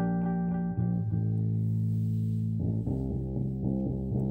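Band music led by electric bass guitar: a run of quickly repeated plucked notes, then long held low notes, then repeated plucked notes again.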